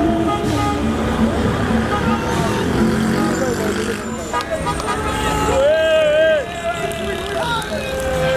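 Many car horns honking in celebration from a slow line of cars, with people shouting and engines running. One long, strong note sounds about two-thirds of the way through.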